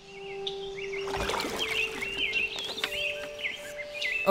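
Birds chirping repeatedly over outdoor ambience, fading in from silence at the start, with a steady low tone underneath.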